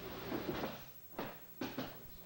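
An aikido takedown onto the dojo mat: a brief rustle of movement, then three sharp thuds and slaps of body and hands on the mat in the second half as the partner is pinned face down.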